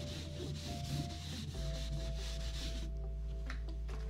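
Chalkboard eraser rubbing back and forth across a blackboard in quick repeated strokes, wiping off chalk, stopping about three seconds in.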